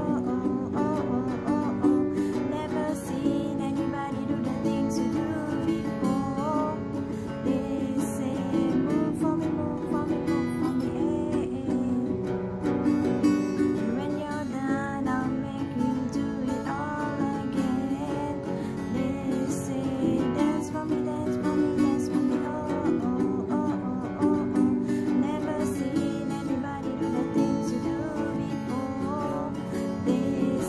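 Steel-string acoustic guitar with a capo, its chords strummed steadily in a continuous rhythm.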